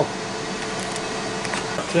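Two countertop air fryers, a Power Air Fryer XL and a Ninja Foodi on air crisp, running together: a steady fan whir with a faint even hum.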